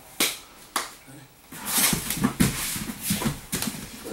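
Two grapplers scrambling on a foam mat as the bottom man comes up from knee-on-belly. There are two sharp slaps in the first second, then from about halfway a busy stretch of scuffling, rubbing and thuds of bodies on the mat.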